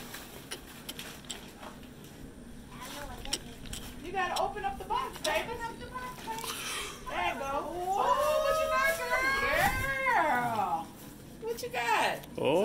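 High-pitched, wordless child's voice: short calls from about three seconds in, then a long drawn-out call that rises and falls. Faint light rustling of a gift box and paper before the voice starts.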